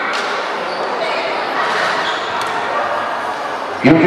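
Crowd chatter in a large sports hall, many voices blending into a reverberant murmur with a few faint knocks. Just before the end a man's voice over the loudspeaker starts, announcing the decision.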